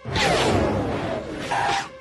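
Cartoonish film sound effect: a loud sudden burst of many pitches sliding downward together, ending in a short held tone near the end.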